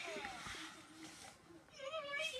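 Furby Boom electronic toy talking in its high, warbling synthetic voice, with a brief rushing noise over the first second and a half and the chatter picking up near the end.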